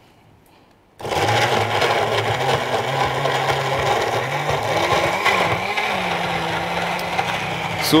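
Countertop blender switched on about a second in, then running steadily as it blends frozen strawberries, frozen banana and milk into a smoothie. Its motor hum wavers in pitch briefly midway, then settles.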